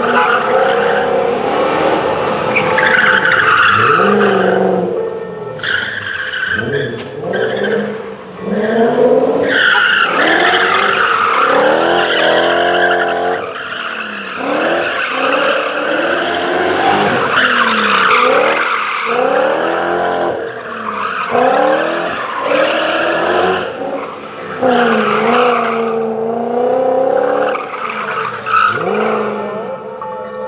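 BMW 530 rally car driven hard, its engine revving up and dropping back again and again as it is thrown around a tight paved course, with tyres squealing through the slides.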